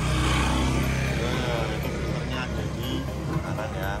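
A road vehicle's engine running past, a steady low hum that is strongest in the first second and a half, heard under background voices and music.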